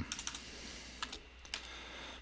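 Typing on a computer keyboard: a handful of scattered keystrokes.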